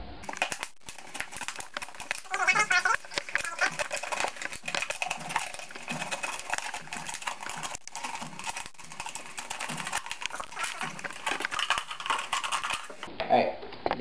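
Two-liter plastic soda bottle crackling and crinkling as an X-Acto knife cuts all the way around it, a dense run of small sharp clicks.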